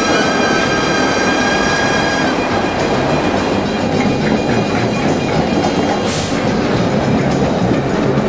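Vintage New York City subway trains running by on the track, with wheel and rail noise, under instrumental music. A held chord or tone stops about two seconds in, and a short hiss comes about six seconds in.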